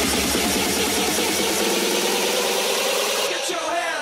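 Electronic dance music build-up: a fast, steady roll under a slowly rising synth tone. The bass drops out about a second and a half in, and near the end the highs cut away into falling pitch sweeps.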